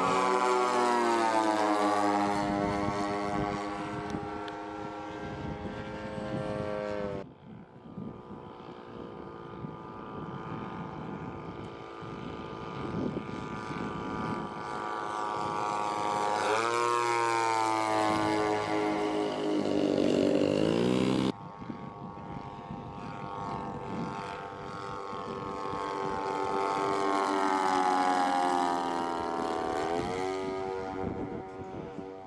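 Large radio-controlled Heinkel He 111 model's twin engines and propellers droning through repeated low passes, the pitch falling each time the plane goes by. The sound drops suddenly twice as the clips change.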